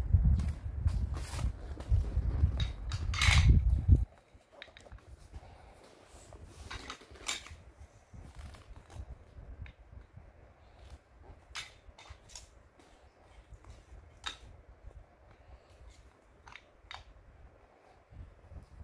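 Toy blocks clicking and clacking as they are picked up and set down on a foam play mat, in scattered sharp taps. A loud low rumble with knocks fills the first four seconds, then stops suddenly.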